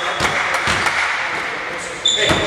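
A basketball bouncing on the hardwood floor of an echoing sports hall: a few sharp thuds in the first second, over the hall's background noise.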